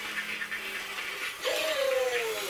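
Motorised toy robots moving, with a steady whir and hiss; about one and a half seconds in, a pitched electronic sound starts and slowly falls in pitch.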